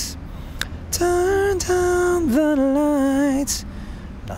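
A man singing a light falsetto phrase: a held note, a quick dip in pitch, then a lower note with a wavering vibrato, ending about three and a half seconds in. It is practice of a blended falsetto line.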